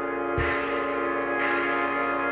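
Experimental film-score music: a sustained chord of steady tones with a struck beat about once a second, a low thump just under half a second in and a brighter strike about a second later.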